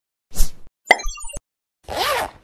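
Animated-intro sound effects: a short pop about half a second in, then a click followed by a quick run of short high blips, and a whoosh starting near the end.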